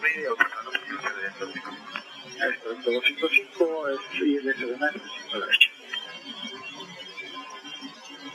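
Cockpit voice recorder audio from a Learjet 45 flight deck: indistinct crew voices over the cockpit's background noise, sounding thin through the recorder's narrow channel, easing off in the last two seconds.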